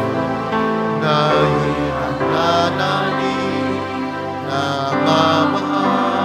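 Slow church hymn for the offertory: a voice singing long held notes over instrumental accompaniment.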